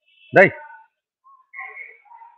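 A brief voice sound about half a second in, then faint, short whistle-like tones in the second half, heard through an online audio-room stream.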